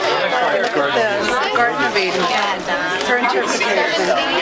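Several people talking at once in close, overlapping chatter.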